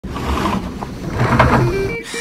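A pleated window shade being raised by its pull cord: a rough rasping and rustling as the cord runs through the headrail and the fabric folds up, louder about halfway through. A steady tone comes in near the end.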